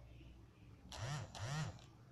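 Two short, faint vocal sounds about half a second apart, each rising then falling in pitch. The voice is lower than the presenter's own.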